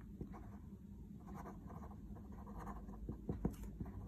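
Pen writing on paper: a faint scratching of short strokes with small ticks as the letters are formed.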